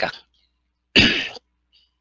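A person clearing their throat once, a short burst about a second in, just after a voice trails off.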